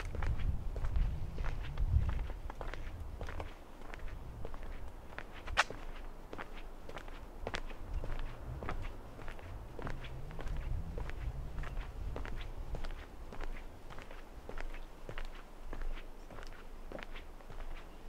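Footsteps on a wooden plank boardwalk, a steady walking pace of sharp knocks on the boards. A low rumble sits under the first few seconds.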